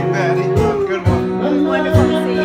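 Live acoustic guitar strumming with a man singing over it, a few strummed chords cutting through held notes.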